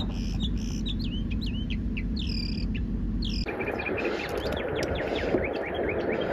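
Northern mockingbird singing: a run of varied short phrases, each repeated a few times before switching to the next.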